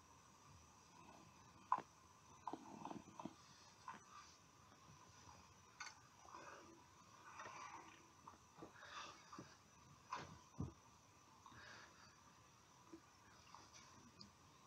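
Near silence, with faint scattered puffs and lip smacks from a man drawing on a tobacco pipe, and a few small clicks.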